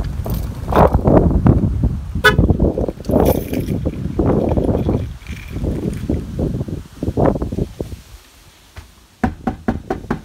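A car horn gives one short toot about two seconds in, over the irregular rustle and thump of walking and handling noise. Near the end comes a quick series of five or six sharp knuckle knocks on a front door.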